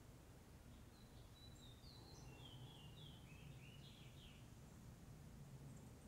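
Near silence with a low steady room hum. About a second in, a faint songbird sings a few seconds of quick, stepped high chirps.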